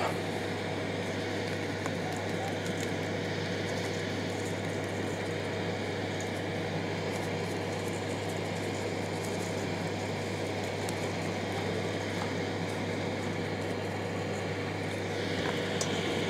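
A steady low hum over even background noise, unchanging throughout, with no distinct knocks or events standing out.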